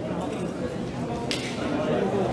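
Indistinct voices of people talking in a large hall, with one short sharp click a little past halfway.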